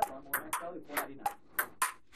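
Table tennis ball clicking off the table and the paddles in a fast rally: a quick run of sharp ticks, about three a second.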